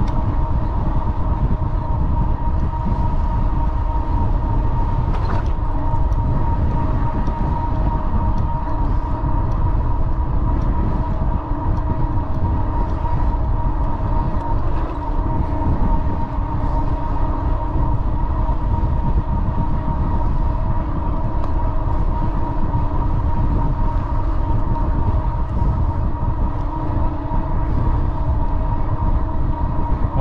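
Wind buffeting the microphone of a bike moving along a paved path, a heavy rumbling rush, with a steady whine underneath.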